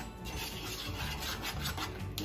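Metal spoon stirring a dry spice mix in a bowl, scraping the powder against the bowl in quick repeated strokes.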